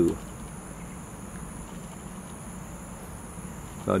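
Steady, unbroken high-pitched insect chorus, a continuous drone of singing insects, over a low background hum.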